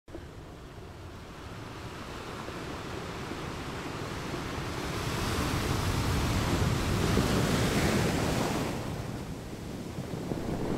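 Sea waves washing on a shore: one long surge of surf that swells over several seconds and then recedes.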